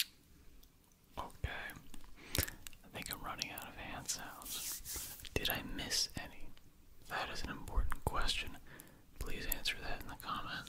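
Close-miked whispering, mixed with ASMR hand sounds: soft movement of hands and fingers near the microphone and several sharp clicks.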